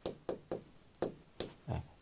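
Marker tip knocking and stroking against a whiteboard as characters are written: about six short, dry knocks, unevenly spaced.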